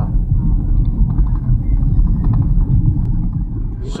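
Loud, uneven low rumble from outdoors by a road, with no clear tone or rhythm in it.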